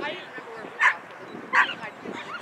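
A dog barking twice, two short loud barks about three-quarters of a second apart, over faint background voices.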